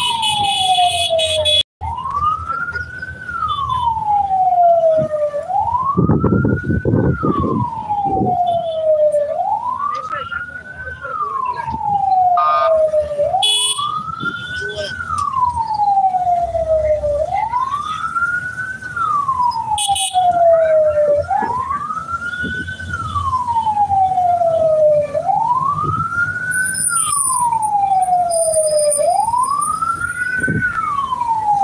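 Vehicle siren wailing, each cycle rising quickly and falling slowly, repeating about every four seconds, over the road and engine noise of a moving vehicle.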